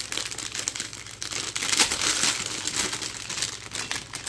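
Clear plastic packaging bag crinkling as it is handled and the toy shapes are worked out of it, a busy crackle that is loudest around the middle.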